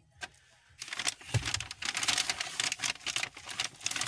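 Kraft-paper bag rustling and crinkling as a hand rummages inside it and handles the packaged groceries, starting about a second in.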